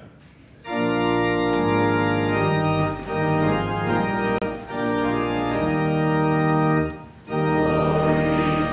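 Church organ playing sustained chords that change every second or so, starting about half a second in, with a brief break near the end before it plays on.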